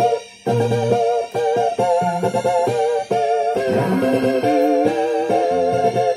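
Roland E-09 arranger keyboard played with both hands: a repeating figure of higher notes with a slight wobble over separate bass notes, with a brief break just after the start. The keyboard is transposed up eleven semitones, which puts the key too high.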